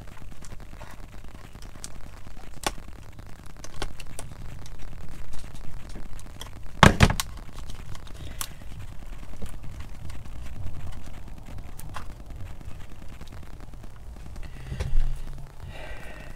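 Small clicks and knocks of hands tucking wires into the open plastic housing of a tillerpilot, with one loud clack about seven seconds in.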